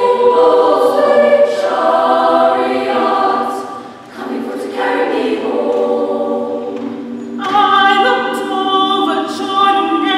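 Women's choir singing held chords in several parts. The sound thins and dips briefly about four seconds in, and a stronger, fuller phrase comes in past the seventh second.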